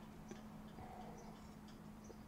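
Near silence: faint room tone with a steady low hum and a few faint small ticks.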